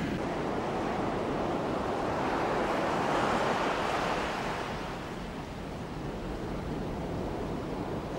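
Ocean surf breaking on a sand beach: a steady wash of waves that swells to a peak about three seconds in and then eases off.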